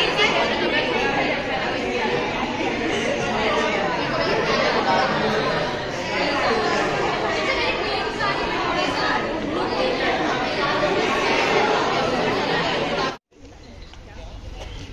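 Many people chattering at once: a roomful of students talking over one another. The chatter breaks off suddenly near the end.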